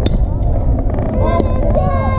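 Several high voices calling and cheering at once over a softball field, with a steady low wind rumble on the microphone. A single sharp knock sounds right at the start.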